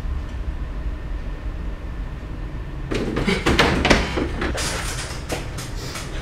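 A steady low rumble throughout. From about three seconds in come irregular rustles, creaks and knocks: a person struggling in a wooden chair against bound wrists.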